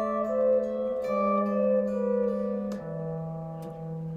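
Epiphone electric guitar playing a few single plucked notes that ring on over a sustained bass note, outlining an A minor chord; near three seconds in the bass note moves lower.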